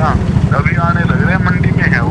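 A steady low engine rumble with a rapid, even pulse, like a motor vehicle idling close by, under a voice talking.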